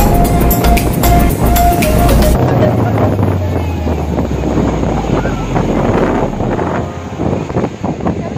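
Background music with a steady beat for the first couple of seconds, then it gives way to the live beach sound: surf breaking and wind buffeting the microphone, with faint voices.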